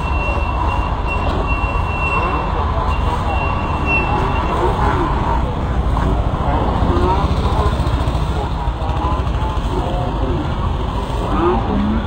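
Indistinct voices of people talking over a steady low rumble of outdoor noise, with a thin high tone that fades out about four seconds in.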